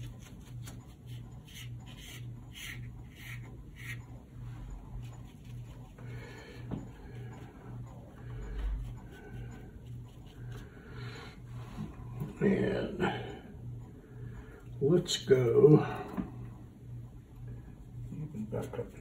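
Short scratchy strokes of a rigger brush on watercolour paper, over a low hum that pulses about twice a second. Two louder, indistinct voice sounds come about twelve and fifteen seconds in.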